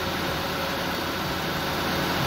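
Toyota four-cylinder VVT-i 16-valve engine idling steadily with the air conditioning running, heard close up under the open hood.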